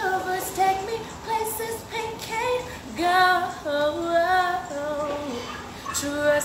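A woman singing a wordless line, sliding between held, wavering notes. A louder phrase starts about three seconds in and falls in pitch.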